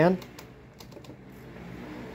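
Hawaiian Breeze 12-inch oscillating desk fan running on high: a faint, steady whir that grows a little louder near the end, with a few light clicks.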